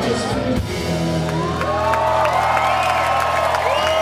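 Live rock band ending a song: the drums stop about half a second in and a held chord rings on. Over it come repeated rising and falling whoops from the crowd.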